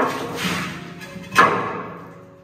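Background music with two knocks of a wooden shelf unit being handled against a wall: one at the very start and a sharper, louder thud about a second and a half in.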